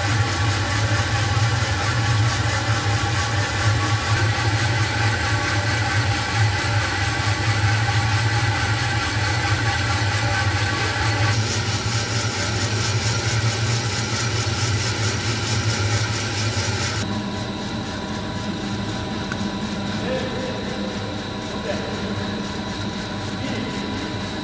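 Drum coffee roaster running mid-roast: a steady low hum with a broad mechanical rush from the rotating drum, fan and burner. The low hum and the upper rush fall away about two-thirds of the way through.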